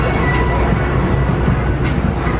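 Steady low rumble of city street traffic, with music playing along with it.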